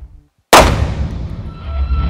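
Music cuts out briefly, then a single loud handgun shot about half a second in, with a tail that dies away quickly, before the music comes back.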